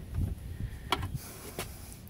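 Handling noise and sharp clicks as a screwdriver works at screws in a thin sheet-metal electronics casing, with two distinct clicks about a second and a second and a half in.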